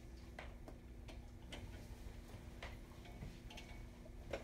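Faint, uneven ticks and clicks, about two a second, over a steady low electrical hum in a quiet room.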